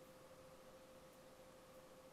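Near silence: faint room tone with a thin, steady hum.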